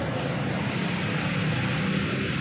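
Steady low drone of a vehicle engine running in street traffic.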